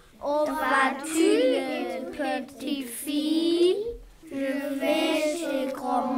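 Young voices singing in short sung phrases, with brief breaks about two and four seconds in.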